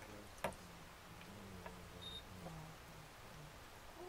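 Whip-finish tool and thread worked at the fly-tying vise: one sharp click about half a second in, then a few faint ticks over quiet room tone.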